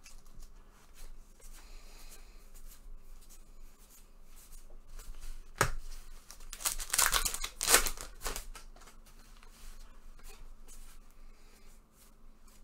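A trading card pack wrapper being torn open and crinkled, with cards handled. There is a sharp snap about halfway through, then a loud tearing and crinkling for about a second and a half.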